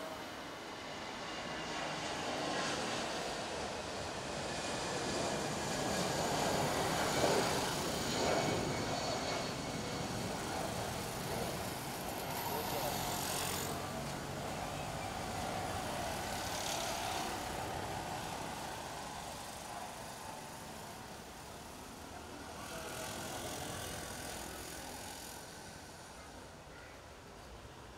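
Road traffic noise that swells and fades as vehicles pass, loudest about seven seconds in, with indistinct voices in the background.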